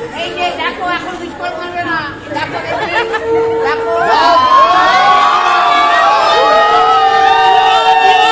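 A crowd chattering and cheering, then from about four seconds in several women ululating together (the Bengali wedding ulu), a loud, high, wavering chorus. A steady held note, typical of a conch shell blown at the rite, sounds briefly before the ululation starts and again under it.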